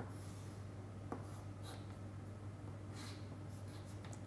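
Chalk drawing on a chalkboard: faint scratching with a couple of short taps, over a steady low hum.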